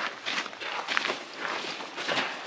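Footsteps on gravel and dirt: a person walking with irregular steps.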